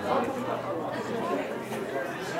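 Indistinct chatter of several overlapping voices from sideline spectators and players during rugby league play.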